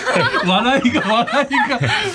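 People laughing and chuckling in a radio studio.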